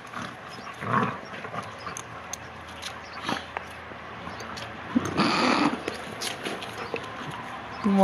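Two young dogs play-fighting, scuffling and mouthing each other with short rough growly noises. The loudest comes about five seconds in.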